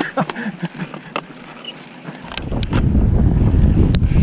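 Mountain bike rolling fast down a dirt singletrack, recorded by a handlebar-mounted camera: a few clicks and rattles, then, about two seconds in, loud low rumble from wind buffeting the microphone and the tyres on the trail as the bike picks up speed.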